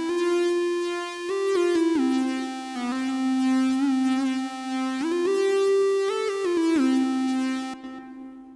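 Martinic AX73 software synthesizer on its 'Square Solo' monophonic square-wave lead preset, playing a slow melody of held notes with short glides between them. It stops shortly before the end.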